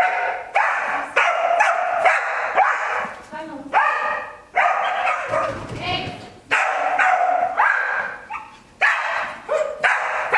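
A dog barking over and over, excited high barks in quick clusters with short pauses, as it runs an agility course.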